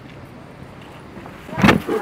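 Steady street background, then a sudden loud burst near the end as the person in the leafy plant costume lunges out at passers-by to scare them.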